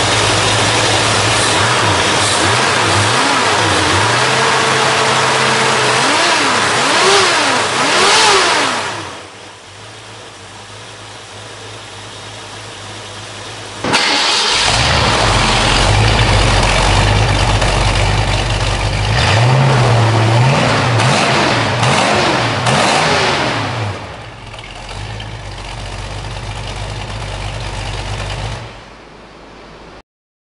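The 1966 Ford Mustang's 302 Windsor small-block V8 runs through its dual exhaust and is blipped through several revs. It is heard first at the engine bay and then, after a sudden jump in loudness about halfway through, at the tailpipes, with more revs before it settles to a steady idle.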